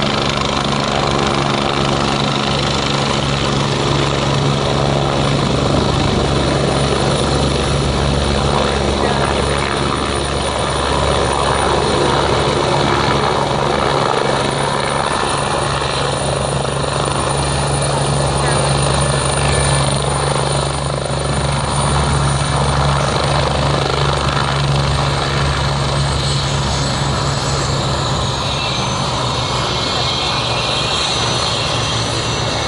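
Air ambulance helicopter's rotor and turbine engine running loud and steady as it descends from a low hover and sets down on a grass field. A high whine drops in pitch near the end.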